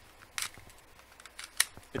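Spring-powered airsoft pistol, a CUAG P.218 Beretta 92-style springer, being worked and fired: a brief sound about half a second in, then a single sharp click near the end. It sounds like it's not really firing at all: zero compression.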